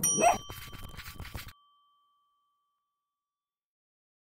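A single bright bell-like ding sound effect for the channel's end screen, struck once and ringing out as it fades over about two seconds. The rest of the audio cuts off to silence about a second and a half in.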